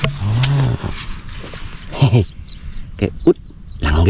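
A man's voice making short, low, wordless sounds: one drawn-out sound in the first second and a few brief ones about two and three seconds in.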